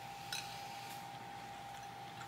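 Quiet room tone with a faint steady whine, and one short bite noise about a third of a second in as a soft graham cracker and marshmallow cookie is bitten into.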